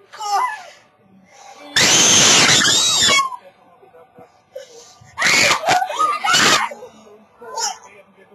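A young person screaming loudly in disgust: two long screams, about two seconds in and again about five seconds in, with shorter cries and exclamations between them.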